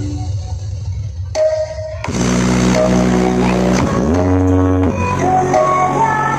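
Loud electronic dance music played through a large outdoor speaker rig during a sound check. A deep bass rumble is heard first; about two seconds in, a fuller synth line with held notes and heavy bass comes in.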